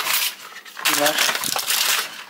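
Cardboard packets and foil blister packs of coffee-machine cleaning tablets being handled, rustling and scraping against each other, with one short spoken word about a second in.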